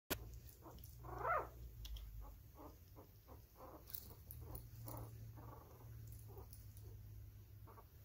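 Faint puppy whimpering: one rising-and-falling whine about a second in, then a string of short squeaks, two or three a second, over a low steady hum.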